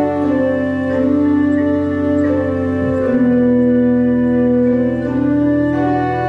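Three-manual Southfield pipe organ improvising in slow, sustained chords, the upper notes moving slowly over held bass notes. The bass changes to a new note about three seconds in.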